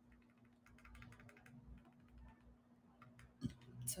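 Near silence: faint scattered clicks over a low steady hum, with a single thump near the end.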